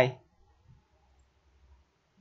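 A few faint computer mouse clicks, spaced out and separate, after the end of a spoken word.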